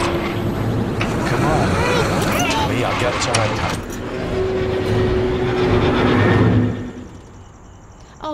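Car engine started and running loudly, with a few short pitched cries mixed over it. The sound falls away abruptly about a second before the end.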